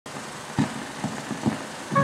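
Hiss and a few irregular pops and thumps from the worn soundtrack of an old 16mm film print at the head of the reel. A musical tone comes in right at the end.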